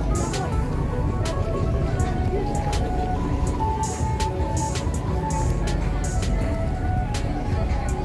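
Music playing over open-air market background noise: voices, a steady low rumble and frequent short sharp clicks.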